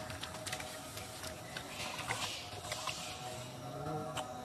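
Water splashing and sloshing as a macaque steps into a shallow pond, with scattered sharp clicks and a noisier patch about halfway through.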